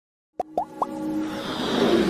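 Intro music sting for an animated logo: three quick rising plops, then a swelling riser that builds steadily toward the end.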